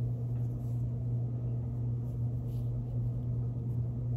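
A steady low hum throughout, with a few faint soft rustles as hands handle a knitted sock.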